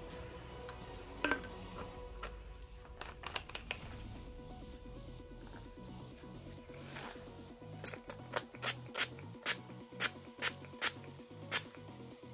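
Background music, over light plastic clicks from a spray bottle and its pump-spray cap being handled. Near the end comes a regular run of about ten sharp clicks, two or three a second.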